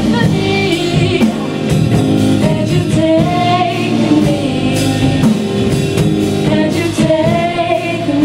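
Live band playing a song: women's voices singing over electric guitar, bass guitar and drum kit.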